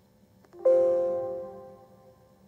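A single electronic notification chime from the computer: a faint tap, then one bright pitched ding about half a second in that fades away over about a second.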